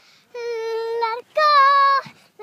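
A young girl singing two long held notes, the second one higher and louder.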